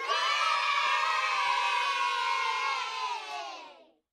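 A crowd cheering and shouting together, starting suddenly and fading out near the end.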